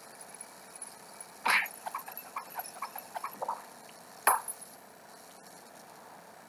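Cartoon sound effects from a stick-figure animation: two sharp, louder hits about a second and a half in and again past four seconds, with a quick run of small ticks and pops between them.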